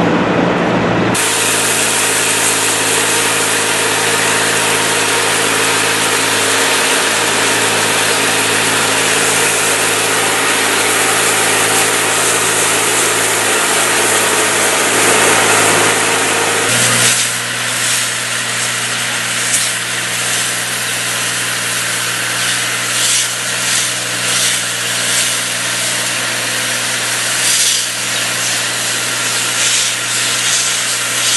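High-pressure water jet from a hand-held spray lance blasting paving tiles clean: a loud, steady hiss over a steady mechanical hum from the pump unit. A little past halfway the sound shifts and the spray hiss turns more uneven.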